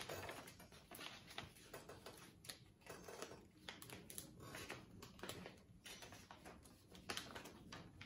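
Faint rustling and crinkling of folded paper airplanes being handled and taped, in short irregular clicks and crackles.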